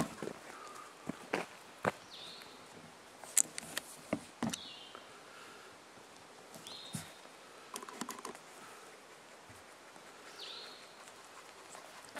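Quiet woodland ambience: a bird gives a short, high, falling call four times, spread over several seconds, with scattered sharp taps and clicks in between.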